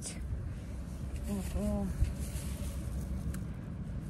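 Plastic produce bags rustling as groceries are taken out of a shopping cart, over a steady low rumble of wind on the microphone. A woman's voice murmurs a couple of syllables about a second and a half in.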